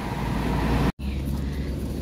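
Steady low rumble of road and engine noise inside a moving car. It cuts off abruptly about halfway through, and a different steady low hum follows.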